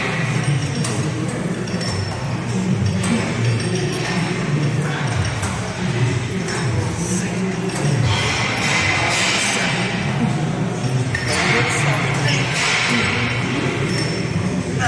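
Busy gym room noise: background voices and music, with occasional metallic clinks of weights.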